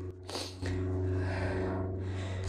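A man's low, steady closed-mouth "hmm" held for about two seconds, after a brief breath, as he ponders a find.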